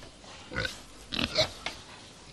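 Pigs grunting: a few short grunts about half a second in and again around a second and a half in.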